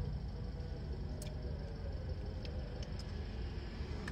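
Quiet, steady low hum of a car's interior, with a few faint clicks.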